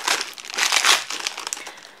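Plastic packaging crinkling as it is pulled off a set of flexible plastic barbed drain-unclogging strips, loudest between about half a second and a second in and fading toward the end.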